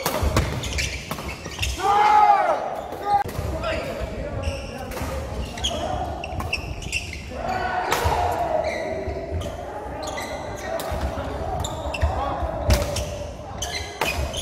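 Badminton doubles rally in a large hall: repeated sharp hits of rackets on the shuttlecock and players' shoes squeaking and thudding on the wooden court, with voices echoing in the hall.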